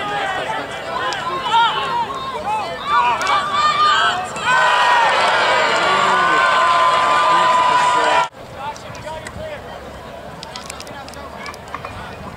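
Sideline crowd of players and spectators shouting and calling out. About four seconds in it swells into a loud, sustained cheer with long held yells, which cuts off suddenly about eight seconds in, leaving quieter voices.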